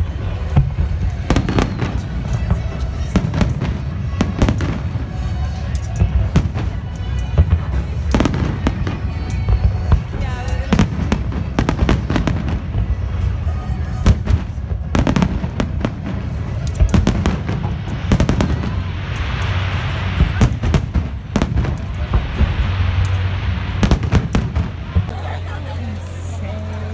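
Aerial fireworks display: a dense, irregular run of shell bursts, with many sharp booms and crackles in quick succession over a constant low rumble, thinning out near the end.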